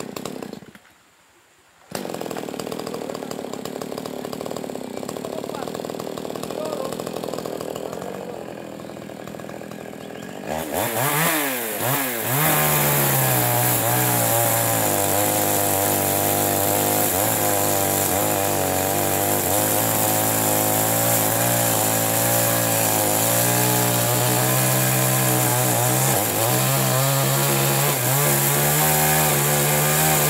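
Yamamax Pro mini chainsaw (small two-stroke) starting about two seconds in and idling, then revving up about ten seconds in and running at full throttle as it cuts into a fallen tree trunk, its pitch wavering and dipping as the chain bites into the wood.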